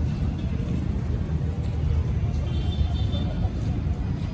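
Steady low rumble of outdoor city ambience, with faint voices of people nearby.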